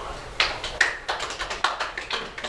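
A quick, uneven series of sharp taps and clicks, about four or five a second, starting about half a second in.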